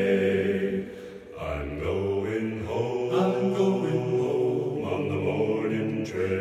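Four-part choir singing sustained chords with no clear words. The sound dips briefly about a second in, then the voices come back in with a held passage led by low voices.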